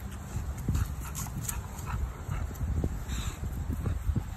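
An English bulldog close to the microphone makes a run of short, irregular breathy noises, over a low rumble of wind on the microphone.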